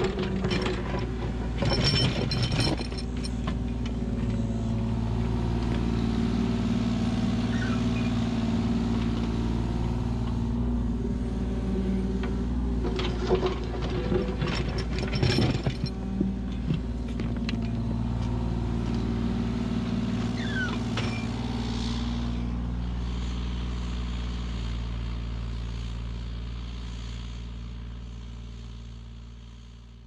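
Kubota U35-4 mini excavator's diesel engine running steadily while it digs in rock, with clatter and scraping of rock against the steel bucket near the start and again about halfway through. The sound fades out gradually near the end.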